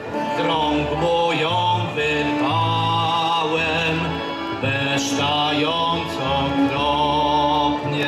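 A man singing a folk-style song into a microphone over an instrumental backing with a stepping bass line; the sung notes waver with vibrato.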